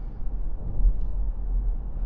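Steady low road and tyre rumble with wind noise inside the cabin of an MG4 electric car driving at speed, with no engine sound.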